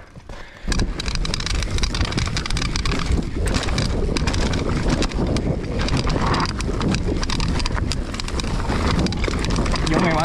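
Mountain bike riding fast down a dirt trail: tyres running over dirt and roots, with a continuous clatter of chain and frame and wind on the microphone. It starts about half a second in.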